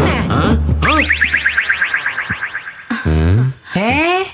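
Electronic comedy sound effect on a film soundtrack: a rapid train of chirps, about ten a second, fading away, followed near the end by a few quick rising swoops.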